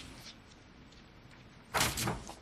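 Faint room tone, then a brief rustle of paper near the end as the pages of a book and loose sheets are handled on the table.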